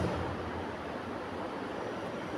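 Steady background noise, a low even hiss and rumble with no distinct events.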